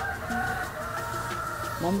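A rooster crowing once, a long call lasting almost two seconds.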